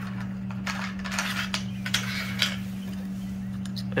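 Several light metallic clicks and scrapes as a square-head bolt is slid along the channel of an aluminium IronRidge XR100 solar racking rail, over a steady low hum.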